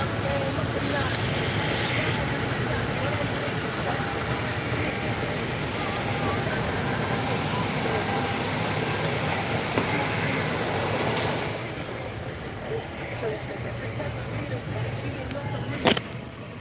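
Steady road and engine noise inside the cabin of a moving car, getting quieter about eleven seconds in.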